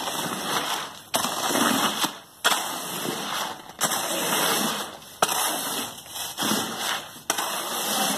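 Fresh concrete being pushed and worked into a foundation trench, in about six strokes, each starting suddenly and lasting around a second.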